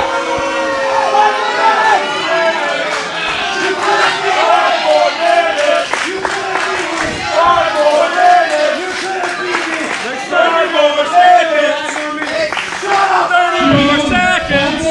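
A small wrestling crowd, many voices shouting at once, showing its displeasure at a match just ruled a time-limit draw.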